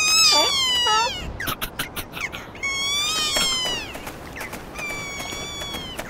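Cartoon seal characters' high, squeaky, meow-like calls, each sliding down in pitch, in three groups. A quick run of clicks falls between the first and second group.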